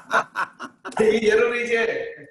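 A man laughing over a video call: a quick run of short chuckles, then a longer drawn-out laugh about a second in.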